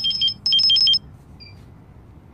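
Electronic beeping from a digital refrigerant charging scale: two quick bursts of rapid high beeps alternating between two pitches, within the first second.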